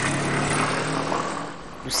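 City street traffic: a passing vehicle's engine hum and road noise, fading away about a second and a half in, followed by the start of a voice.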